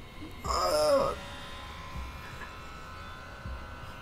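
A brief spoken phrase about half a second in, then a faint, steady drone of several held tones from the TV episode's soundtrack.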